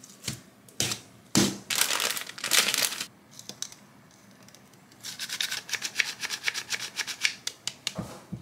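Close handling sounds: two light knocks, a loud burst of rustling or crinkling, then after a pause a quick run of light clicks, several a second.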